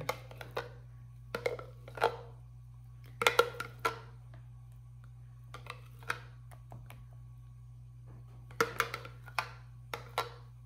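A metal spoon scraping and knocking inside a blender jar, digging out the last of a thick cheese sauce, in several short bursts of clicks and scrapes. A low steady hum runs underneath.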